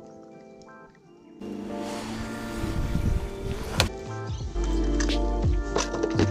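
Background music: soft and sparse at first, filling out about a second and a half in, with a deep bass line coming in after about four seconds.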